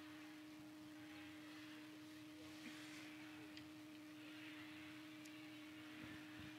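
Near silence: faint background hiss with a steady low electrical tone.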